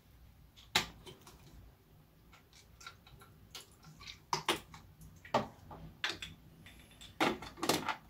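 Scattered light clicks and knocks from handling a plastic lime-juice squeeze bottle over a blender jar of ice, with a few sharper knocks in the second half as the blender jar is set down onto the blender base.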